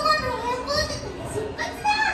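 High-pitched, childlike voices speaking, with faint music underneath.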